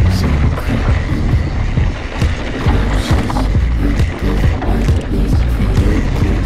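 Background music over the rumble and rattle of a mountain bike rolling fast down a rocky dirt trail, with irregular knocks from the tyres and suspension hitting stones.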